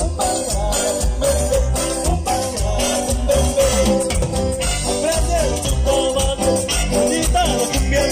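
A live cumbia band playing an instrumental passage: an accordion and saxophone melody over electric bass, drum kit and the steady scrape of a metal güira.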